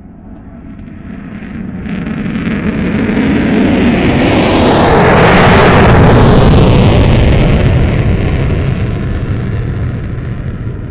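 An F/A-18 Hornet's two General Electric F404 jet engines at full power with afterburner on the takeoff roll. The roar builds steadily, peaks as the jet passes about halfway through with the whine dropping in pitch as it goes by, then fades as it runs away down the runway.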